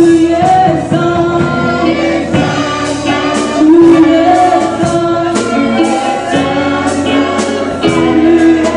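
Gospel praise song sung by a small group of amplified women's and men's voices, with held notes, over a steady drum beat.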